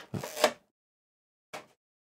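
Clear plastic blister packaging of a card collection box crackling as it is handled: a burst of about half a second at the start and a shorter one about a second and a half in.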